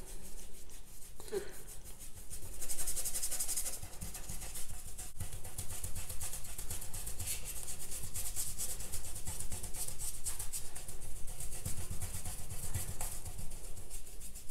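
Bristles of a wet paintbrush rubbing across watercolour paper in quick, repeated strokes as the paint is blended, with a louder stretch of scrubbing about three seconds in.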